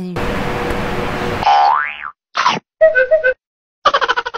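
Cartoon-style editing sound effects: about a second of static-like hiss, a quick rising whistle-like glide, two short blips, then a wobbling boing near the end that pulses about ten times a second and fades out.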